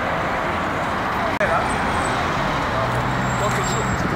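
City street traffic noise, a steady wash of passing vehicles with voices of people around, broken by a momentary gap about a second and a half in. A low engine hum joins in the last second.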